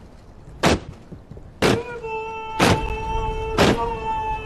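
Ceremonial band beating a slow, heavy cadence, one loud beat with a ringing crash about once a second. A steady held brass-like note joins about two seconds in.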